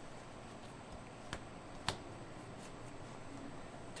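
Two small sharp clicks, about half a second apart, with a few fainter ticks, as a BCD inflator assembly's threaded fitting is turned by hand onto the bladder; otherwise quiet room tone.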